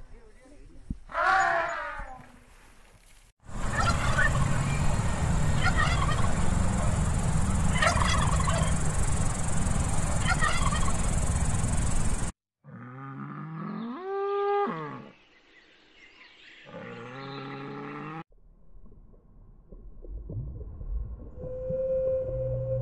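A sequence of animal calls: an elephant gives a short falling call about a second in; then domestic turkeys gobble four times, about every two seconds, over a steady hiss; then a humpback whale sings, two groups of long gliding, wavering tones.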